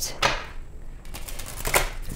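A tarot deck being shuffled by hand: sharp clicks of card edges knocking together, twice at the start and once more near the end.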